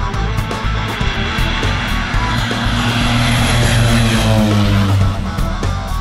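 A propeller airplane flying low past the camera: its engine drone swells to a peak about halfway through, then drops in pitch as it goes by. Background music with a steady beat plays throughout.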